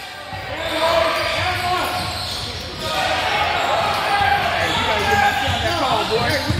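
Basketball game on a hardwood gym floor: the ball bouncing, sneakers squeaking in short bursts and voices of players and spectators, echoing in the large hall.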